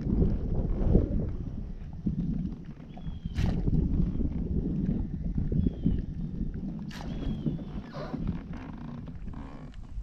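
Wind buffeting the microphone and water lapping against a kayak, a steady low rumble, with two sharp clicks about three and a half seconds apart and a few faint short chirps.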